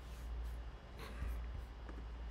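Quiet room tone with a low steady hum and a few faint, short clicks.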